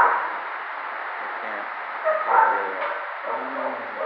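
Dogs barking and yipping in shelter kennels: a sharp sound at the start, then short pitched barks and whines about two seconds in and again near the end.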